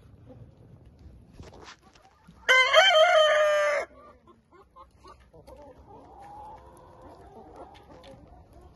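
A rooster crows once, a loud crow of a little over a second starting about two and a half seconds in, with softer hen clucking and murmuring after it.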